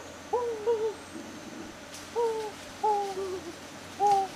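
A man hooting with pursed lips: about five short hoots, some in quick pairs, each rising and then dipping in pitch.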